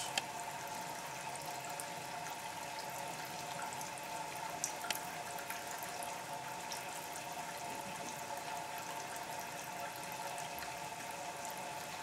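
Thin stream of distillate trickling from the still's stainless steel outlet pipe into a bucket and an overflowing test cylinder, over a steady hum. There are a couple of faint clicks about five seconds in.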